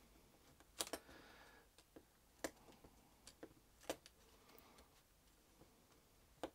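Hobby knife blade scoring a strip of thin styrene sheet: a handful of faint, irregular ticks and a short scrape, very quiet overall.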